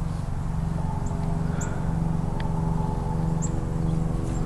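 A steady low mechanical hum with overtones, like a running motor. A few brief, high chirps sound over it.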